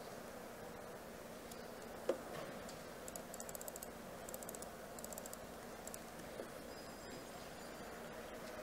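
Faint typing on a computer keyboard: one click about two seconds in, then several quick runs of keystrokes in the middle.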